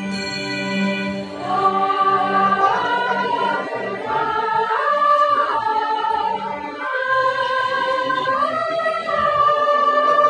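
Karaoke backing track of a Hindi film song, playing a smooth melody of long held notes that step up and down over sustained chords.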